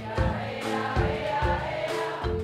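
A soul band playing live: drum kit and bass keep a steady beat under a held, wavering sung note, with no lead lyrics.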